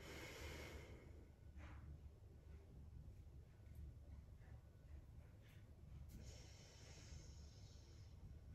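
Faint breaths drawn in and let out through the nose during a yoga breathing exercise, one nostril held closed by a finger: a long breath at the start, a short one just under two seconds in, and another long one about six seconds in.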